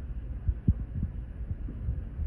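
Low rumble with a few dull thumps, the loudest a little over half a second in: handling or wind noise on the microphone.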